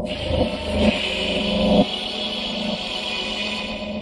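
Sound-design layer of an ambient electronic soundtrack: a low, engine-like rumble that cuts off suddenly a little under two seconds in, under a steady high hiss that starts abruptly.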